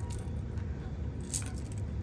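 Light metallic clinking of a metal hair barrette's dangling chain fringe as it is handled, with one sharper clink past the middle, over a low steady hum.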